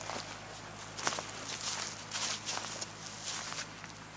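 Footsteps on dry straw stubble, about two steps a second, over a steady low hum.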